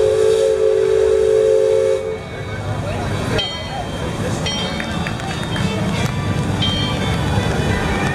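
Steam whistle of the Liberty Belle paddle-wheel riverboat blowing one long, steady chord of about two seconds, cutting off sharply; a general crowd din follows.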